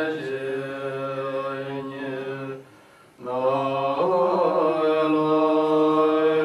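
Tibetan Buddhist monks chanting a prayer together in long, held notes. The chant breaks off for a breath about two and a half seconds in and picks up again about half a second later.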